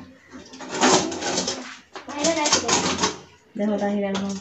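A woman's voice, mostly speech, starting clearly near the end, with two short hissing, scratchy noises earlier on.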